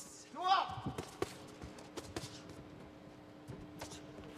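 A few sharp thuds of boxing gloves landing during an exchange of punches, spread out about a second apart, over a steady low hum. A brief voice sounds about half a second in.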